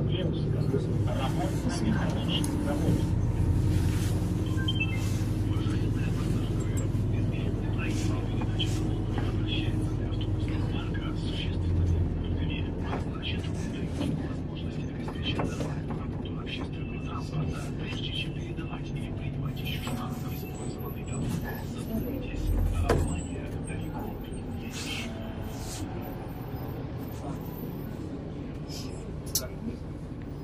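Inside a MAZ 203 low-floor city bus under way: steady engine and drivetrain drone with road rumble, louder in the first half and easing later, with two short low thumps from bumps in the road. Indistinct passenger voices are mixed in.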